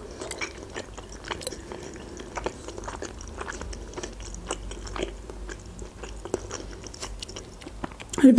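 A person chewing soft pelmeni dumplings in cheese sauce close to the microphone: a run of small, irregular mouth clicks with quiet chewing in between.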